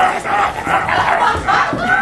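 Several voices yelling at once, a loud overlapping group clamour that continues throughout.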